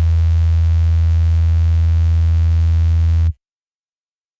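A loud, steady low drone note, a single held pitch with a buzzy stack of overtones, sustained as the closing sound of a pop-rock song. It cuts off suddenly a little over three seconds in.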